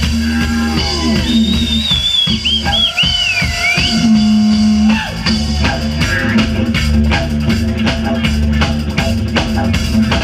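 Live band music: a didgeridoo drone under bass and a drum kit keeping a steady beat. In the first few seconds a high lead line glides up and down over it.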